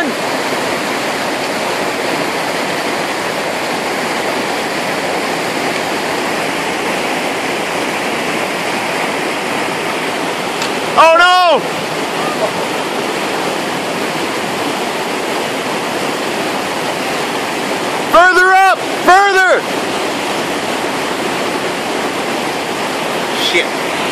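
Fast river current rushing steadily over shallows. Three short, loud shouted calls that rise and fall in pitch cut through it, one about halfway and two in quick succession near the end.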